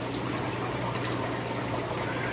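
Steady water trickling and bubbling from aquarium aeration and filters, over a low steady hum.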